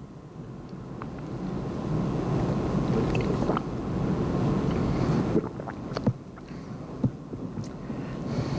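Rumbling handling noise from a camcorder being moved and reframed, growing louder over the first couple of seconds, with a few sharp clicks and knocks.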